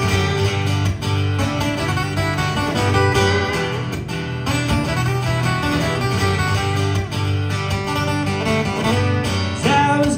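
Live concert music led by guitar: an instrumental passage with strummed and plucked guitar, without words sung.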